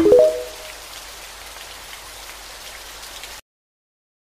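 Steady rain with a faint patter of drops, which cuts off abruptly about three and a half seconds in.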